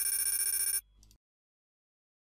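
Kahoot! game sound effect: a ringing electronic chime lasting under a second as the quiz scoreboard comes up, then the audio cuts off to dead silence.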